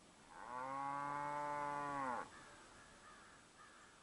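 A cow mooing: one long call of about two seconds that drops in pitch as it ends.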